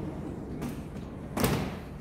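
Folding glass window panel being pushed fully open, with a light knock about half a second in and a louder thud about a second and a half in as the panel reaches its stop.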